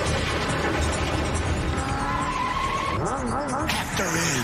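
Animated action-scene soundtrack: a dense mix of background score and sound effects, with a wavering, warbling cry near the end.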